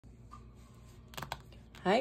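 A few quick, sharp clicks in a cluster just over a second in, over faint room tone, and then a woman's voice begins near the end.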